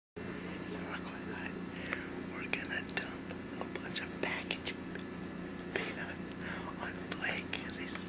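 A person whispering close to the microphone in short hissy phrases, over a steady low hum.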